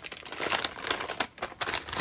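Crinkled yellow paper envelope being handled, its paper crinkling in a rapid, irregular series of rustles.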